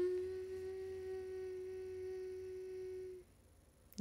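A young woman humming one long closed-mouth 'nnn' on a steady pitch for about three seconds, stopping well before she speaks again.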